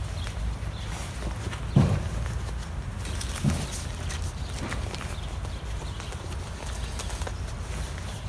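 Handling noise of a fabric bar mitt being pushed and pressed onto a bicycle handlebar: scattered rustles and a few dull knocks, the loudest about two seconds in and a smaller one about three and a half seconds in, over a steady low rumble.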